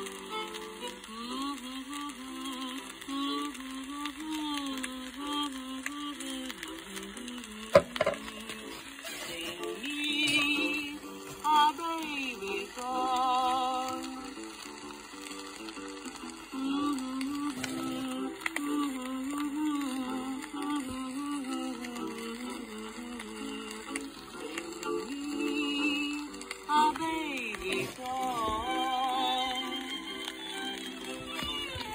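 Instrumental break of a 1920s acoustic-era 78 rpm Victor record: violin melody with vibrato over guitar and piano accompaniment. A single sharp click comes about eight seconds in.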